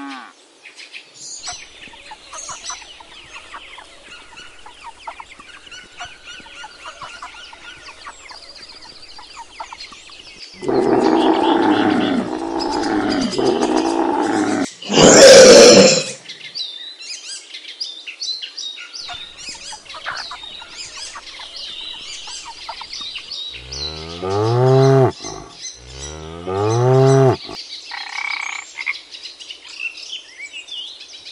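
A run of animal calls over faint chirping. First a long, low call with many overtones lasting about four seconds, then a loud breathy burst about a second long, the loudest sound. Near the end come two shorter low calls with a bending pitch.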